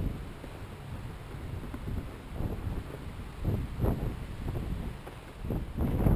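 Honda TRX450R quad's single-cylinder four-stroke engine running at low revs as it turns slowly, its low rumble mixed with wind buffeting the microphone.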